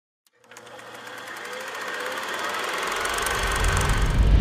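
Intro sound effect: a fast, even buzzing rattle that starts about half a second in and swells steadily louder. A deep rumble builds under it in the last second.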